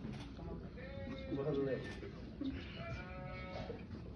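Overlapping voices of guests just after a toast: scattered calls and chatter, with a few drawn-out, wavering exclamations over room noise.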